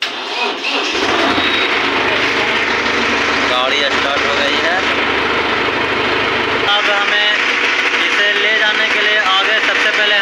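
Mahindra Arjun Novo 605 DI tractor's four-cylinder diesel engine starting and settling into a steady idle, its first start on a freshly recharged battery after standing for many days. About seven seconds in, the deep part of the engine sound drops away, with voices over it.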